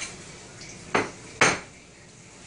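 Kitchenware clinking: two sharp knocks of a utensil or dish against a pan or plate, about half a second apart, the second louder and briefly ringing.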